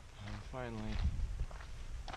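A man's wordless voice making one drawn-out sound that falls in pitch, over footsteps on a dirt trail.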